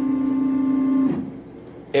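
Laser engraver's stepper motors driving the laser head along its gantry to the home position with a steady whine. The whine cuts off about a second in as the head stops at home.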